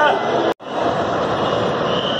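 Voices of people talking, cut off suddenly about half a second in; then the steady running of a diesel bus engine.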